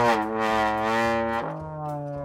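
Trombone played by a first-time player: one long held note, then a step down to a lower held note about one and a half seconds in.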